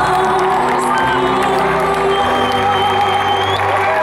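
Live concert music with long held chords, and an arena crowd cheering and whooping over it.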